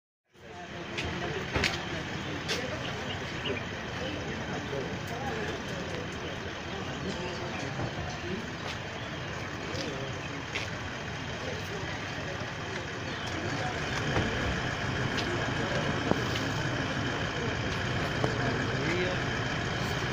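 Outdoor crowd noise: many people talking at once, none of it clear enough to pick out words, over a steady low rumble with scattered clicks and knocks. It cuts in just after the start and grows a little louder about two-thirds of the way through.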